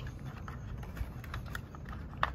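Light, irregular clicks and taps of small plastic parts being handled: a phone mount's rubber handlebar spacers being picked at in their plastic packaging tray.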